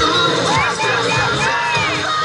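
A crowd of young fans screaming and cheering, many high shrieks rising and falling over one another, over dance music.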